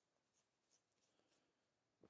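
Near silence: room tone in a pause of speech, with two faint ticks about halfway through.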